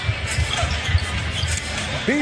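A basketball being dribbled on a hardwood court, with irregular low thuds, over steady arena crowd noise and music.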